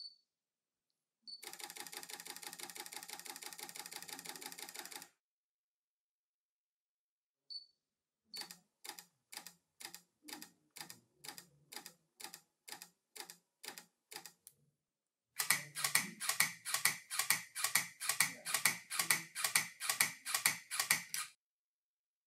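Micro Four Thirds camera shutters, from a Panasonic G80 and G1, firing continuous bursts. First comes a rapid burst, then a slower one at about two frames a second, then a louder one at about three frames a second.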